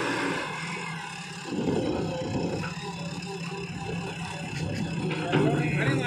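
JCB backhoe loader's diesel engine running under load as the front bucket lifts and tips a load of soil, growing louder about a second and a half in and again near the end.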